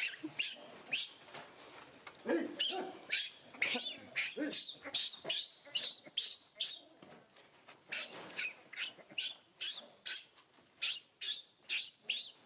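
Baby macaque screaming in distress, a rapid run of short, high-pitched shrieks, several a second and many falling in pitch, as an adult female holds it down and bites it.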